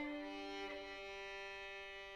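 Opera orchestra playing a quiet passage of held chords led by bowed strings, with a violin line on top. One of the sustained notes drops out about halfway through.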